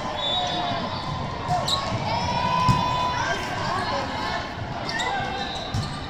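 Echoing sports-hall din during a volleyball rally: a few sharp knocks of the ball being struck, sneakers squeaking on the court, and voices around the hall.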